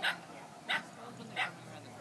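A dog barking three times, about two-thirds of a second apart, as it runs an agility course.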